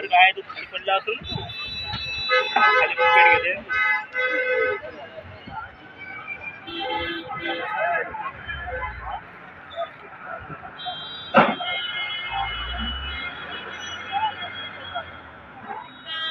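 People talking for the first few seconds, then a steady high-pitched tone held for several seconds, with one sharp click part way through.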